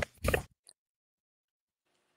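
A man's voice trailing off in the first half second, then near silence with a single faint tick.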